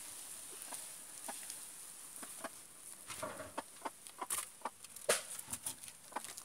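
Hens clucking faintly, mixed with scattered clicks and rustles and two sharp knocks, about four and five seconds in.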